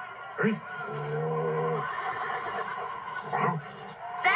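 Cartoon dragon's vocal sound effect: a steady, hum-like grunt held for just under a second, with a short grunt later on.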